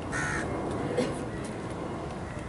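A crow cawing once, a short harsh call just after the start, over quiet outdoor background.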